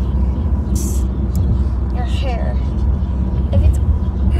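Steady low rumble of a car's cabin on the move, with a short hiss close to the microphone about a second in and a voice sounding briefly around two seconds in.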